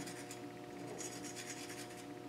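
Faint scratching of an underglaze applicator bottle's fine needle tip drawing lines on a raw clay bowl coated in white slip, over a low steady hum.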